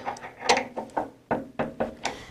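Mechanical clicks and clunks from a round column mill's quill feed as the quill is run down by its quill wheel: several sharp, irregularly spaced knocks over the two seconds.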